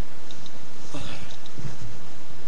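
Dog sniffing close to the microphone: a few faint clicks early on, then short sniffs about a second in and again near the end.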